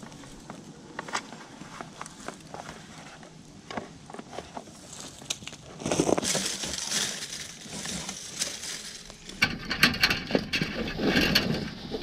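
Electrical cables being pulled through a corrugated plastic conduit: scraping and rustling with scattered clicks, louder from about halfway through and busiest near the end.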